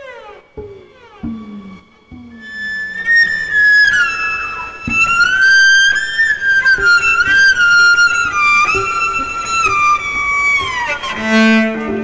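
A cello bowed high on its strings in one long singing line that slides between notes and falls away near the end, after a few short falling glides at the start. Other instruments join in just before the end.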